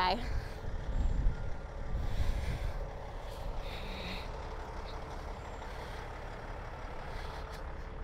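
Heavy truck's engine running, a steady low rumble with a faint constant hum.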